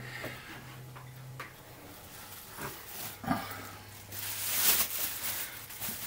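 Faint handling noises at a workbench: a few small clicks and a rustle, over a steady low electrical hum.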